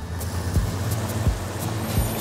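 Cartoon sound effect of a bus engine running as the bus pulls up. Background music with a steady beat underneath.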